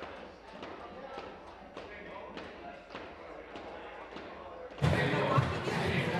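Hall ambience in a large debating chamber: low indistinct chatter with scattered knocks and thuds. Near the end, a louder stretch of voices cuts in suddenly.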